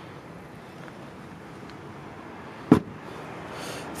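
Rear door of a 2014 Audi Q3 being shut: one solid thump about two-thirds of the way in, over steady outdoor background noise.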